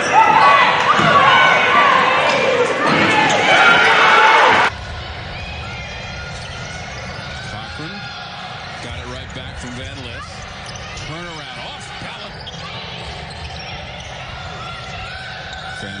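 Basketball game sound: loud voices shouting on court with a ball bouncing. About five seconds in it cuts abruptly to quieter court sound: a ball being dribbled and faint voices.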